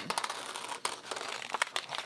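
Scissors cutting around a shape in a sheet of printer paper: a run of small, irregular snips with the paper rustling as it is turned.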